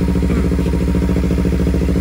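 Kawasaki Z300's parallel-twin engine idling steadily, warmed up after running for a long time.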